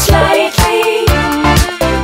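Pop song playing, with a steady drum beat over bass and guitar.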